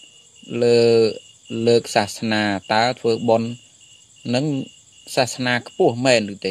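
A man preaching in Khmer, in short phrases with brief pauses, over a steady high-pitched tone that runs throughout.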